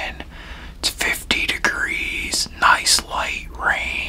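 A man whispering, in short phrases with brief pauses.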